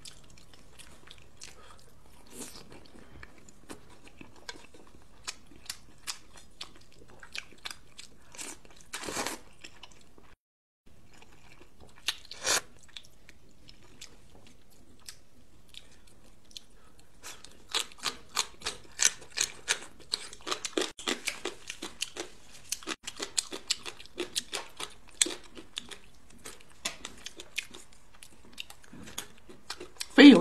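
Close-miked eating of spicy hot and sour noodles with fried tofu puffs and peanuts: wet chewing and crunching mouth sounds made of quick short clicks. They are sparse at first, with a couple of louder bites, and turn into fast, steady chewing in the second half.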